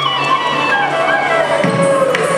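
Live Carnatic ensemble music: a gliding melodic instrument line over a steady low drone, with a few sharp percussive strikes near the end.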